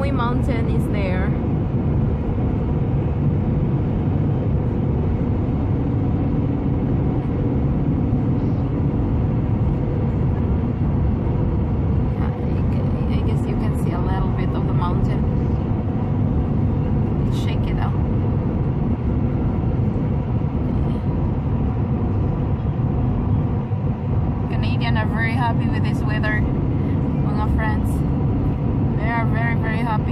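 Steady road and engine noise inside a moving car's cabin, with a few snatches of quiet conversation.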